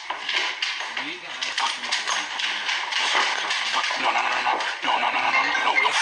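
A person's voice, words indistinct, over a steady rustling, clattering noise that starts abruptly.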